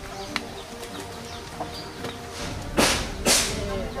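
Two quick whoosh sound effects, about half a second apart, near the end, over faint background music, marking a scene transition.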